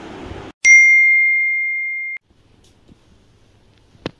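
A single edited-in 'ding' sound effect at a scene cut: one clear, high bell-like tone that starts suddenly, rings for about a second and a half while fading slightly, then cuts off abruptly.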